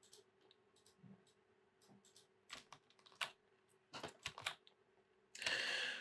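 Faint, scattered clicks and taps from a computer keyboard and mouse, with a couple of louder clusters in the middle. A short hiss comes near the end.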